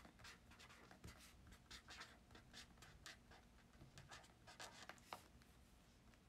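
Faint, irregular light taps and scratches of hand handling, several a second, with one slightly sharper tick about five seconds in.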